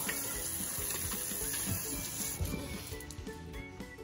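Bathroom tap water running over soapy hands as they are rinsed at the sink, with soft background music underneath. The rush of water thins out about two and a half seconds in.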